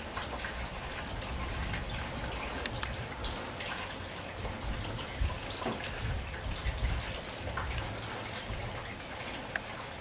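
Steady rain falling, with many scattered drop clicks close by and an uneven low rumble underneath.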